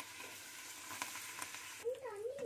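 A pappadam sizzling as it fries in hot oil in a kadai, a steady hiss with a few small crackles. A voice begins near the end.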